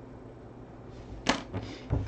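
A single short, sharp knock a little over a second in, over a low steady room hum.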